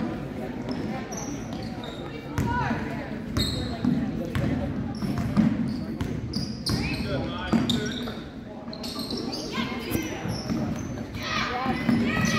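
A basketball bouncing on a hardwood gym floor, with short high sneaker squeaks from players running, over spectators talking and calling out in a large gym.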